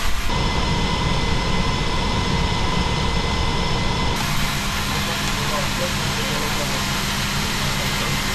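Steady drone of a military transport aircraft's engines or auxiliary power unit heard inside the cargo hold, with a constant high whine. The sound changes abruptly twice, shifting in tone with each change of shot.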